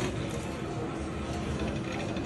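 Slot machine playing its pinball bonus round with ball-rolling and mechanism-like effects, over steady casino floor background noise.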